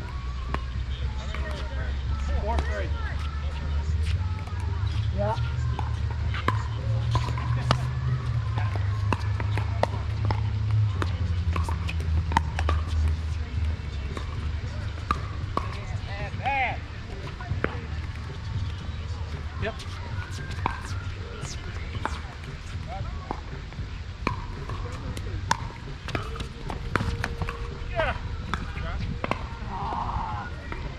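Pickleball paddles striking a hollow plastic ball in rallies, a string of sharp pops at uneven spacing throughout, over a low rumble that is heaviest in the first half.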